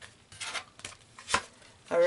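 Oracle cards being handled: a short rustle and a few sharp taps as a card is drawn from the deck and turned over, the loudest tap about a second and a half in.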